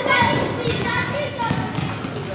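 Several basketballs bouncing on a gym floor, with short thuds scattered through, under children's chatter and calls that echo in the large sports hall.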